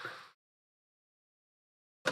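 Near silence: the end of a spoken phrase fades out in the first moment, then dead silence.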